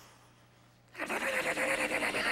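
Near quiet with a faint hum for about a second, then a man abruptly lets out a loud, strained vocal noise held at one pitch, with a rapid buzzing rasp through it.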